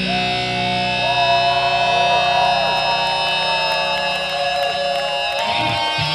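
Live heavy-metal band: electric guitars holding long, sustained notes that bend and slide in pitch over a droning low note. About five and a half seconds in, the drone stops and the guitars break into strummed chords.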